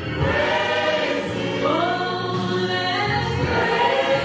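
Gospel singing led by a woman on a microphone, with long held notes that slide in pitch over a steady low accompaniment; other voices sing with her.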